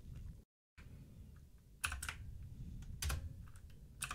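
Computer keyboard typing quietly: a few scattered keystrokes, the clearest about two and three seconds in.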